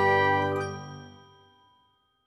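Intro jingle of ringing, chime-like tones dying away, fading out about a second and a half in.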